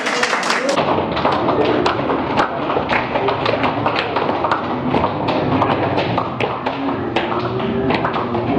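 Hand clapping in a steady rhythm over band music, with voices mixed in.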